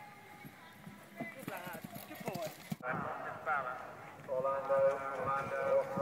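A horse's hoofbeats, a run of repeated knocks on the ground as the horse travels, heard under a commentator's voice.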